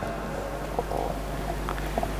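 Pause in speech: a steady low electrical hum with faint hiss through the hall's sound system, and a few soft ticks.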